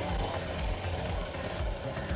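Suzuki DR150's 150 cc single-cylinder four-stroke engine running at low revs as the bike rolls slowly over dirt, a steady low drone.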